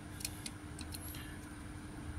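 Quiet, steady low hum with a few faint, light clicks and rubs in the first second, from a small diecast toy car being handled in the fingers.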